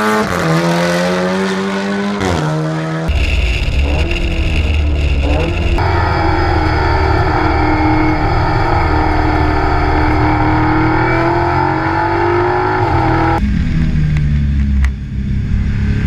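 VW Golf TCR race car's turbocharged four-cylinder engine accelerating hard, its pitch rising and then dropping at a gear change about two and a half seconds in. It is then heard from inside the stripped cabin: a loud, deep engine note that climbs slowly under load, with a sudden change in the sound near the end.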